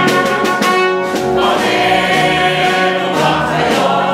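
Music: a group of voices singing together over instrumental accompaniment, with a quick run of sharp percussive hits in the first second.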